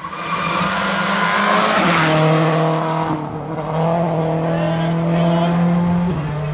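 Rally car engine running hard at high revs as it approaches, its note stepping down about two seconds in and then held steady, with a brief hiss of tyre noise around the same moment.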